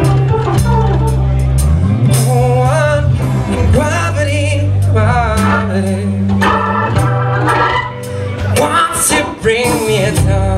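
Live blues band playing: organ to the fore, with electric guitar, bass and drums, and sustained low bass notes under bending melodic lines.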